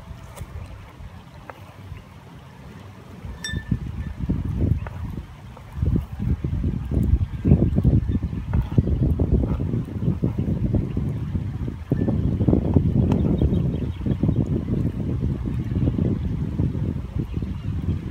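Wind buffeting the microphone: a low rumble that swells in gusts from about a third of the way in and stays loud. Faint taps of a knife chopping onion on a plastic cutting board sit under it.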